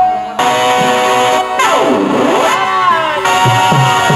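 Synthesized transition sound effect: a noisy swoosh whose pitch sweeps down and back up, laid over held harmonium notes. Low tabla strokes come back in near the end.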